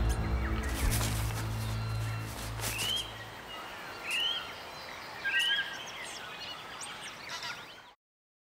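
Television channel ident sound design: a bass-heavy music sting that fades out about three seconds in, followed by three short rising-and-falling bird chirps about a second apart over a faint outdoor ambience with a few soft clicks.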